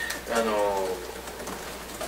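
A man's voice drawing out a hesitant filler "ano" in a falling tone for under a second, then a pause with only a steady low hum.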